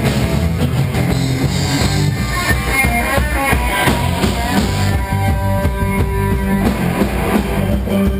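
Live rock band playing an instrumental passage on drum kit, bass and electric guitars, with sustained guitar or keyboard notes over a steady beat.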